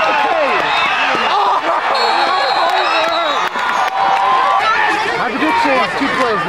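Crowd of spectators in the stands talking and shouting over one another, many voices at once with none standing out.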